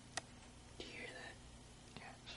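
A faint whispered voice, short and falling in pitch, about a second in, after a sharp click near the start, over a low steady hum.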